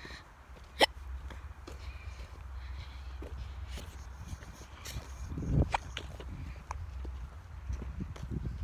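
Footsteps crunching on dry leaves and dirt along a woodland trail, with handling rumble from a phone carried while walking. A single sharp click a little under a second in is the loudest sound, and there is a heavier thump about five and a half seconds in.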